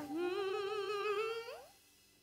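Female soul singer holding one long note with vibrato, almost unaccompanied; the note slides upward and fades out about a second and a half in.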